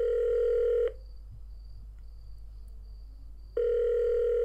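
Telephone ringing tone heard on the line: a steady low tone lasting about a second, a pause of nearly three seconds, then the tone again near the end. This is the call ringing through at the other end before it is answered.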